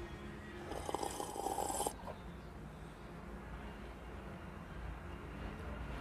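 A faint slurping sip from a paper cup about a second in, lasting about a second.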